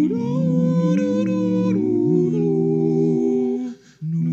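Wordless humming of several sustained notes sounding together as a chord, the notes moving step by step, breaking off briefly near the end before the next chord starts.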